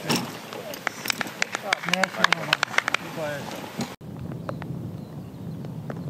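Scattered hand-clapping from a small golf gallery mixed with a few voices, cut off abruptly about four seconds in, followed by quiet outdoor background.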